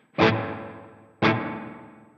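Clean electric guitar through the Sonicake Matribox II's spring reverb model with the decay turned up: two chords struck about a second apart, each ringing out and fading with a sort of boingy spring-reverb tail.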